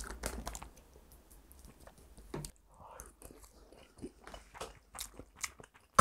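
Close, quiet eating sounds: a spoon clicking and scraping as it mixes sauce into rice in a bowl, and a person chewing a mouthful, heard as scattered small clicks and ticks.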